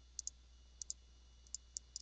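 Computer mouse button clicks, short and sharp, coming in five bursts over two seconds. Most bursts are quick pairs like double-clicks. A faint low hum runs underneath.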